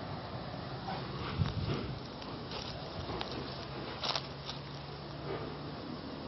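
Rustling and scattered clicks of handling and steps through dry grass and leaves. There is a low thump about a second and a half in, over a steady low hum.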